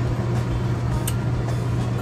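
A steady low mechanical hum with a constant drone, with a faint click about a second in.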